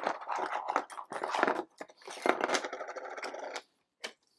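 Small plastic Ankh: Gods of Egypt miniatures clattering as they are tipped out of a plastic Ultra Pro deck box onto the cardboard game board: a dense run of small clicks and rattles that stops shortly before the end.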